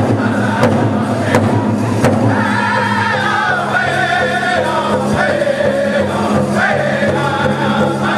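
Powwow drum group singing together around a large shared drum, beating it in unison in a steady beat about once every two-thirds of a second. The beats are clearest for the first two seconds, and a chorus of high-pitched voices comes in at about two seconds.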